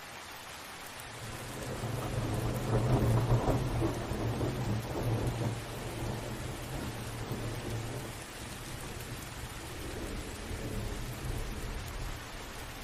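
Steady rain with rolling thunder: a low rumble swells about a second in, peaks around three seconds and fades away over the next few seconds, then a weaker rumble comes back near the end.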